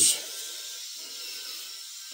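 VeroShave 2.0 rotary head shaver running against the scalp: a steady, quiet motor buzz with a faint rasp of the blades cutting stubble. The level holds even, with no sag in motor speed.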